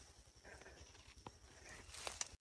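Near silence: faint outdoor background with a single faint click a little over a second in.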